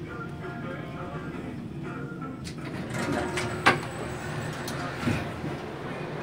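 Lift car moving between floors with a steady low hum, a single sharp click about halfway through, and the sliding doors opening near the end. Faint voices murmur in the background.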